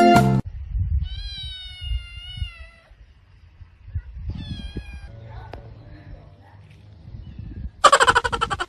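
A cat meowing twice: one long, wavering meow about a second in, then a shorter one around four seconds in. Music stops just after the start and comes back loudly near the end.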